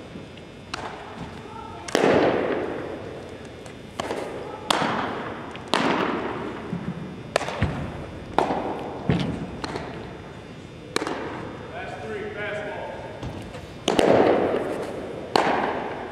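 Sharp pops of baseballs smacking into catchers' mitts, repeated every second or few, each echoing for a second or two around a large hard-walled gym, with faint voices between.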